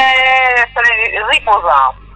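Speech: a person talking in the interview, stopping just before the end.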